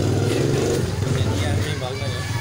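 A motor vehicle engine running steadily close by, easing off a little after about a second, with voices in the background.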